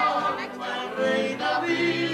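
Live singing by several voices, accompanied by an acoustic guitar.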